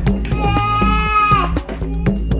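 Background music with a steady beat, over which a young child's high-pitched, drawn-out vocal sound is held for about a second and dips in pitch as it ends.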